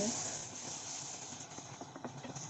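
Chopped onion and tomato sizzling in oil in a kadhai while a wooden spoon stirs and scrapes them. The sizzle fades over the two seconds, with a few light clicks of the spoon against the pan in the second half.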